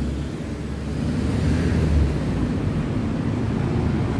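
Steady low rumble of vehicles, swelling for a moment about two seconds in.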